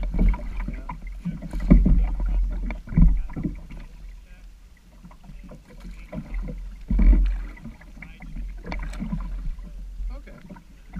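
Paddle strokes and water sloshing against a Sun Dolphin Aruba 10 plastic kayak, picked up by a camera mounted on the bow. A steady low rumble swells into a few heavier low thumps, the strongest about seven seconds in.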